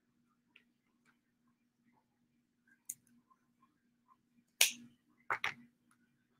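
Scattered light taps and clicks of hands at work at a desk, cutting and handling paper, with one sharp click a little past halfway and two more close together near the end, over a faint steady hum.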